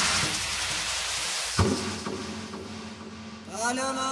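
Transition in a tribal guarachero DJ mix: a hissing noise sweep fades away, a single hit lands about a second and a half in, and a voice sample with sliding pitch enters near the end.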